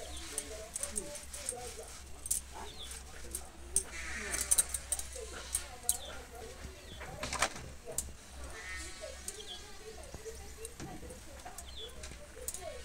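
An animal calling twice, a wavering call about four seconds in and a longer one near nine seconds, over a steady low hum, with a few sharp clicks.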